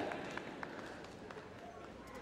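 Quiet background hum of a large indoor arena, with a few faint light taps scattered through it.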